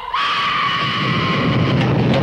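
A woman's long, high scream held on one pitch over a low rumble; the scream stops shortly before the end while the rumble carries on.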